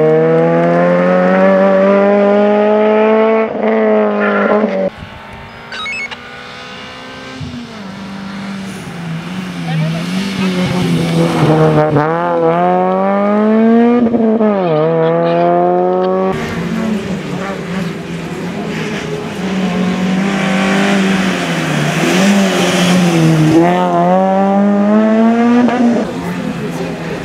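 Suzuki Swift rally car engine revving hard, its pitch climbing and dropping back at each gear change as the car accelerates away. The sound comes in several separate runs that change abruptly between shots, quieter and more distant in the middle stretch.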